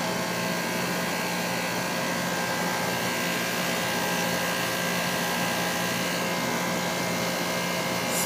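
2006 Guardian 4-ton central air conditioner condensing unit (Bristol compressor, A.O. Smith fan motor) running steadily: an even rush of air with a steady hum underneath.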